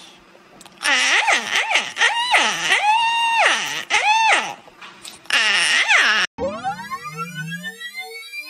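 Cockatiel screeching in a run of loud calls that swoop up and down in pitch, with one longer held note in the middle. About six seconds in, the calls cut off and an electronic rising sweep follows.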